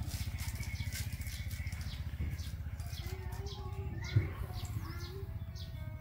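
Birds chirping over a steady low motor hum that throbs rapidly, with one sharp knock about four seconds in.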